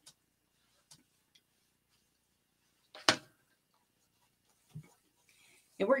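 Sparse faint clicks and handling noises from craft materials being worked at a table, with one sharper click about three seconds in and a soft low thump near the end.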